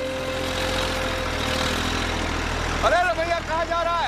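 Tractor diesel engine running steadily, with a voice calling out loudly twice near the end.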